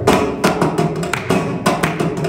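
Mridangam played in a quick run of sharp, uneven strokes, several a second, over a steady drone.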